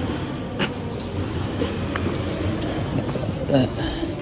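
Sneakers being pulled off by hand: a few light clicks and scuffs over a steady low background rumble, with a voice briefly heard near the end.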